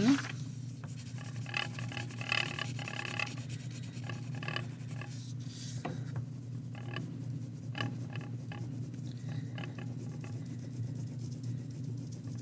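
Wax crayon scribbling on paper in runs of quick back-and-forth strokes with short pauses, over a steady low background hum.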